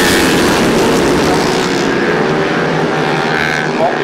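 A pack of grasstrack solo racing motorcycles, their 500cc single-cylinder engines at full throttle, making a loud continuous drone of several engines together as they race into the first corner.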